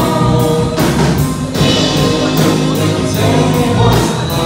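Live band playing: electric guitars, bass and drums on a steady beat of about two strokes a second, with singing over the top.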